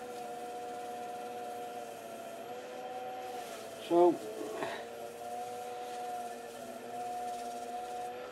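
Small wood lathe running with a steady motor whine while a cloth rubs polish onto the spinning bowl; the pitch wavers slightly a few times.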